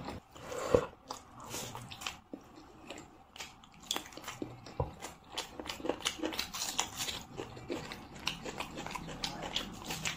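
Close-miked chewing and wet mouth clicks of a person eating rice and chicken curry by hand, with crunching as she bites into raw onion. There is one louder mouth sound just under a second in.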